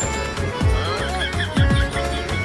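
Background music with a low beat about once a second, and a horse-neigh sound effect laid over it from about half a second in, its pitch wavering and sliding.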